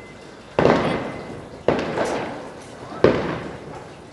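Firecrackers going off: three sudden loud bangs a little over a second apart, each trailing off over about a second, the third the loudest.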